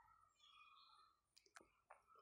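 Near silence: room tone, with two faint short clicks near the end.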